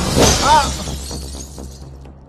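Glass shattering: a sudden crash in the first half-second, over background film music that fades away.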